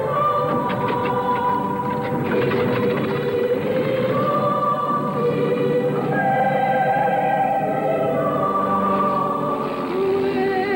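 Choral singing: a choir of voices holding long notes and moving to a new pitch every couple of seconds.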